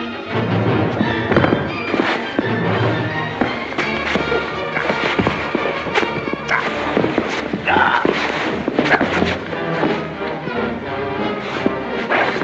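Film score music over a hand-to-hand fight, with repeated thuds of blows and bodies hitting the floor.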